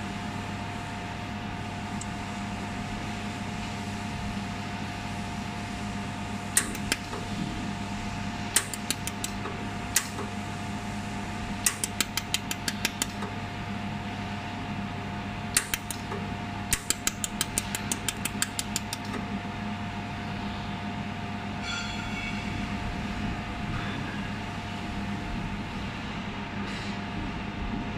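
Desktop welding machine humming steadily with its cooling fan running. Sharp clicks of weld pulses come singly and in quick runs of about five a second as a small metal part is welded.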